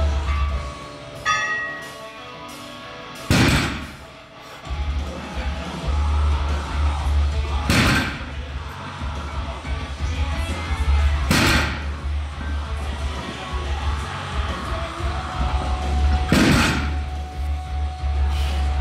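Background music with a heavy bass line. Over it, a barbell loaded with 302.5 kg of bumper plates is set down on the floor four times, a heavy thud with a ringing tail every four seconds or so: one for each rep of a set of four deadlifts.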